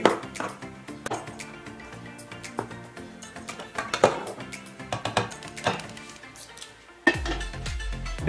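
Metal spoon scraping and clinking against the side of an aluminium pot while stirring a potful of chopped innards, several irregular clinks, over background music.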